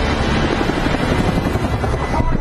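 Helicopter flying overhead, its rotor and engine making a loud, steady, fast-pulsing noise in a film's sound mix.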